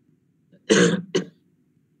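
A man coughs twice: a full cough a little under a second in, then a short second one.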